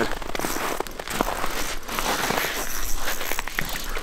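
Crunching and rustling from movement on snow-covered ice, with scattered sharp clicks: snow compacting under knees and boots, and clothing rustling.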